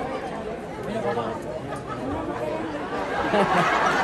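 Pre-show theatre audience chatting: many overlapping voices in a busy murmur, growing louder near the end.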